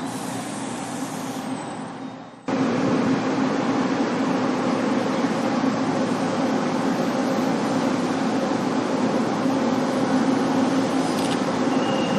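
Diesel train engine running with a steady low drone. About two and a half seconds in, the sound cuts abruptly from a quieter idle to a louder, closer drone that holds steady.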